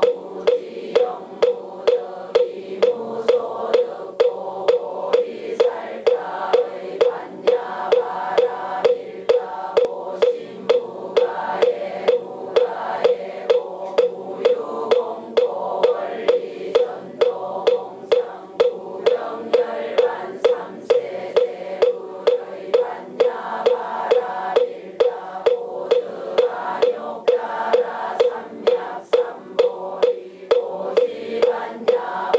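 A moktak (Korean wooden fish) struck at a steady beat of about two knocks a second, keeping time for a congregation chanting in unison.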